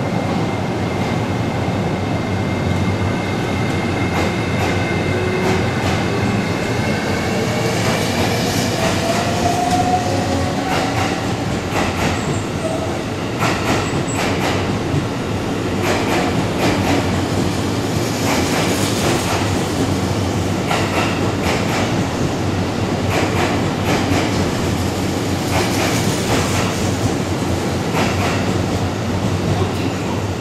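A JR East E653 series electric train accelerating away from the platform. Its traction motors whine, with several tones rising steadily in pitch over the first ten seconds or so. The wheels then clack repeatedly over rail joints as the cars roll past.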